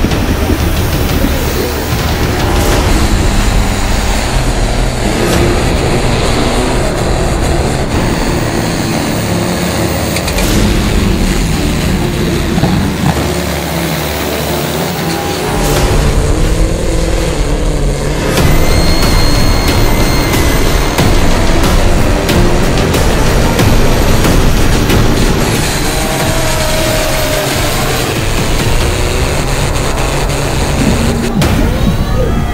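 Heavily modified, turbocharged pulling tractors and a pulling truck running at full throttle under heavy load, mixed with music.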